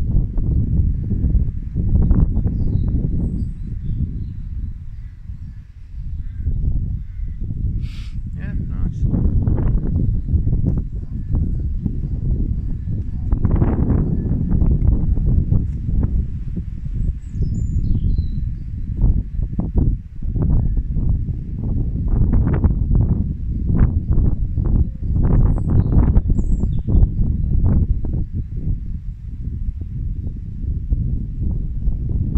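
Wind buffeting the microphone: a loud, gusting rumble that comes and goes throughout. Now and then faint birds chirp.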